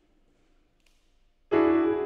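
Near silence, then about one and a half seconds in a piano is struck once, loudly, and left to ring and fade.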